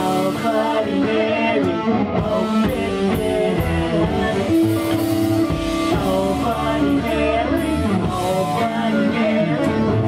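Live punk rock band playing at full volume: electric guitar and drum kit with cymbals, and a singer's voice into the microphone, without a break.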